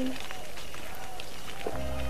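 A woman's voice trails off, then light footsteps on a dirt path sound over outdoor background noise. Near the end, soft background music with long held low notes comes in.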